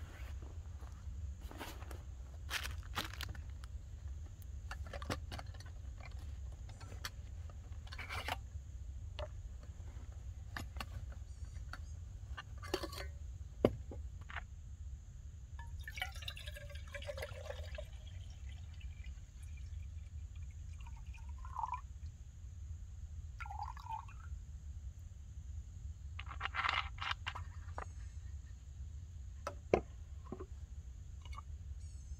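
Water poured from a plastic bottle into a stainless steel Stanley cup for about two seconds around the middle, with the pitch of the pour changing as the cup fills. Around it, scattered clicks and rustles of gear being handled and unpacked from a backpack.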